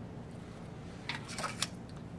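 Quiet room tone with a few short, light clicks a little past the middle.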